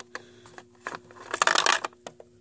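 Small plastic toy figures clicking as they are handled and set down on a hard surface, then a louder rattling clatter of plastic pieces about one and a half seconds in.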